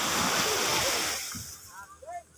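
Surf washing up on a sand beach: an even rushing noise that fades away about a second and a half in.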